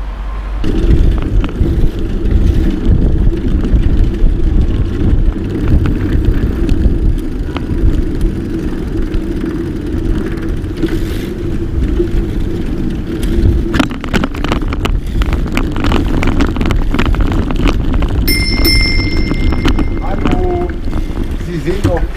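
Bicycle being ridden along a city street: heavy low rumble of wind on the microphone and tyres on the road, with a steady drone that fades out about two-thirds of the way in. Near the end a high ringing tone lasts about two seconds.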